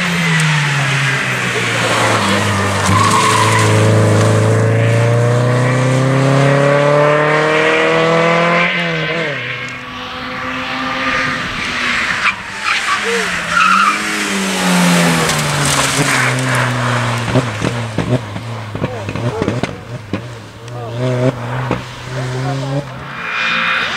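Two rally cars passing one after the other at speed. First a Renault Clio accelerates away with its engine rising steadily in pitch for several seconds until a gear change about eight seconds in. Then, about twelve seconds in, a BMW 3 Series Compact comes past, its engine dipping and climbing in pitch through the corner before holding a steady note with uneven bursts of level.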